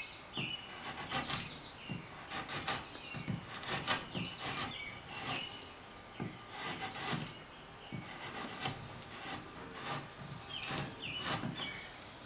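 A scorp paring a wooden chair seat in a series of short, irregular slicing strokes, each a brief scrape as the blade makes stop cuts and lifts chips to cut a V back toward the gutter.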